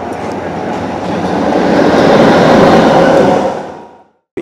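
Electric locomotive of Tanzania's standard-gauge railway (E6800 class) passing at speed: a rushing noise of wheels on rail that builds to its loudest about two seconds in, then fades out near the end.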